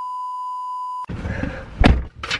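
A steady, high-pitched test-card beep tone that cuts off suddenly about a second in. It is followed by rustling handling noise inside a vehicle cabin, with one sharp thump near the end.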